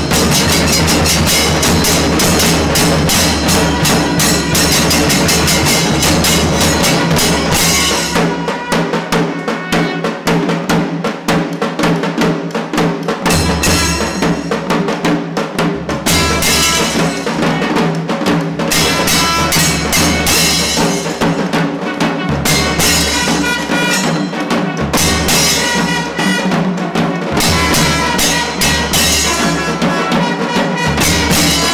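Kailaya vathiyam ensemble playing: cylindrical and barrel drums beaten with sticks in a fast, dense rhythm, with long brass horns holding steady tones over them. The deepest drum strokes drop back for a few seconds about a third of the way in, then return.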